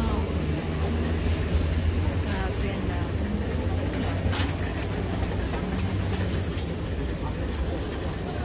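Indistinct voices over a steady low rumble, with a few faint clicks.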